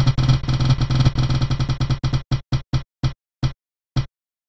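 Spinning prize-wheel sound effect: a fast run of pitched, plucked-sounding ticks that slows down, the ticks spacing out more and more over the last two seconds as the wheel winds down.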